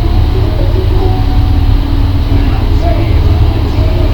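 A loud, steady low rumble with faint fragments of a person's voice over it.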